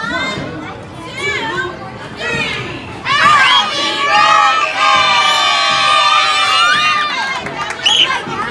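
A group of children shouting and cheering together, starting suddenly about three seconds in and carrying on for about four seconds. Before it, voices talking.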